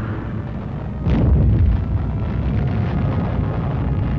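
A bomb dropped from an aircraft exploding: a sudden blast about a second in, followed by a long, deep rumble that slowly dies away.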